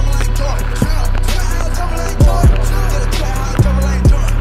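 Music track with a deep, sustained bass line, booming kick drums that drop in pitch, and quick hi-hat ticks.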